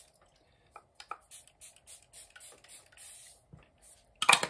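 Makeup setting spray misted onto the face: a quick string of short spritzes, one slightly longer than the rest about three seconds in.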